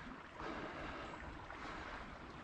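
Faint, steady rush of running creek water, an even hiss with no distinct events.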